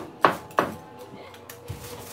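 Two sharp knocks of hard painting gear being handled at the floor, each with a brief ringing tail, in the first second, followed by quieter handling.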